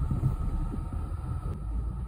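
Low, steady rumble of a Ford Mustang's engine heard inside its cabin in slow traffic, with a single faint click about one and a half seconds in.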